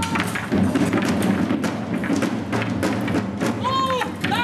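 Wooden pike shafts knocking and clattering together in a mock pike fight, many sharp knocks in quick succession, with men shouting, one shout near the end.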